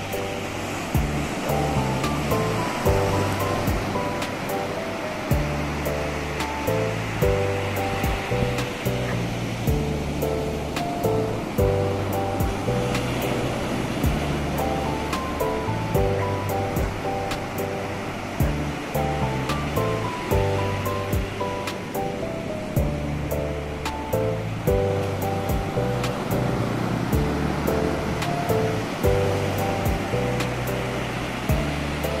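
Ocean surf breaking and washing up a beach, a steady rush, mixed with calm instrumental piano music that moves through held chords over a slow stepping bass line.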